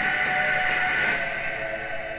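Movie trailer soundtrack: a sustained, whistle-like chord of several steady tones that slowly fades as the trailer goes to black.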